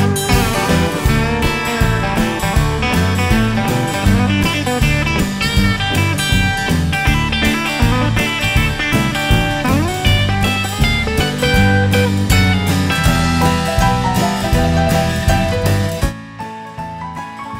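Instrumental break in a honky-tonk country song: a twangy guitar lead with sliding, bending notes over bass and a steady drum beat.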